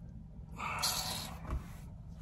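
A man's long breathy exhale, like a sigh, lasting about a second, followed by a faint click.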